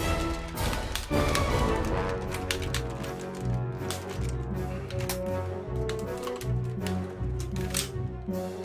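Background music with a steady bass line, over which come irregular sharp plastic clicks and clacks from a toy M203-style under-barrel grenade launcher being handled, its barrel sliding and latching.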